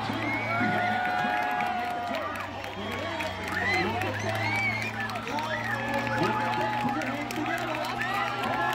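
Spectator crowd chattering and cheering, many voices overlapping, over a steady low hum.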